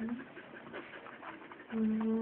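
A dog panting and making small vocal noises at close range. Near the end, a long, steady low note starts.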